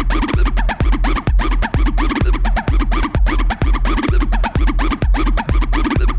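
Electro house dance music from a DJ mix: a steady, heavy bass beat with short pitch-sliding sounds repeating over it.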